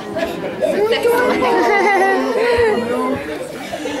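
Overlapping chatter of several voices, children and adults talking at once, in a large room.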